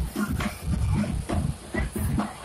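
Outdoor street-festival ambience: music with a pulsing bass from loudspeakers, and people's voices, with a short, loud, rough sound about half a second in.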